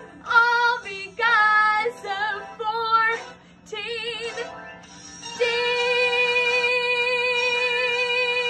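A woman singing: a few short sung phrases, then one long held note with vibrato from about five seconds in.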